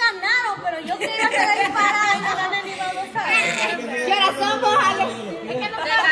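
Only speech: several people talking over one another in Spanish, a room full of overlapping chatter.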